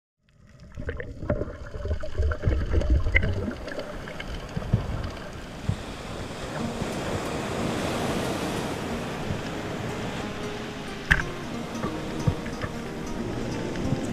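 Underwater camera sound of a diver swimming: a muffled rush of water with heavy low rumbling in the first few seconds, and scattered sharp clicks, one louder about eleven seconds in.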